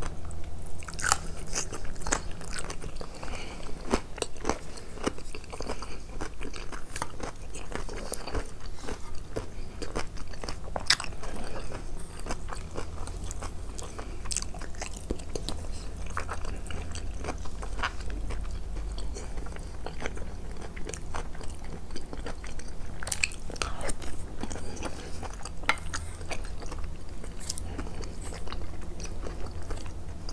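Close-miked chewing and biting of eggplant mnazzala (fried eggplant and potato stewed with beef) and rice, with wet mouth sounds and irregular sharp clicks.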